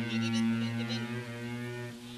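Electronic keyboard holding one low droning note that slowly fades toward the end, likened to the sound of berokan.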